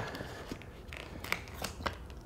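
A few light, separate clicks and rustles of a hand peeling a small taped-on paper cover off a metal LED light fixture and setting it down.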